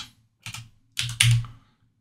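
A few keystrokes on a computer keyboard, in two short clusters about half a second and a second in.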